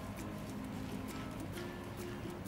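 Soft background music with held notes, over faint scattered wet clicks of a gloved hand tossing julienned radish in its chili-flake seasoning in a glass bowl.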